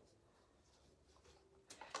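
Near silence: room tone with a faint low hum, and a short soft noise shortly before the end.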